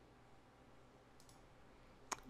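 Near silence: room tone, with one faint computer mouse click a little over a second in.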